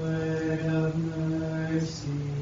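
A single man's voice chanting a litany petition on one held reciting tone, with an 's' sound near the end.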